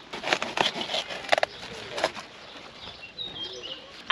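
Stiff red cabbage leaves rustling and snapping as the head is handled and harvested, with several sharp clicks in the first two seconds, the loudest about a second and a half in.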